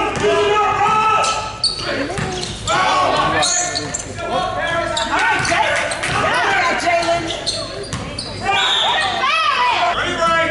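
A basketball bouncing on a hardwood gym floor during play, mixed with the overlapping chatter and calls of players and spectators, all echoing in a large gym.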